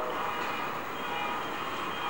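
Steady background hiss with faint, steady held tones coming in about a second in.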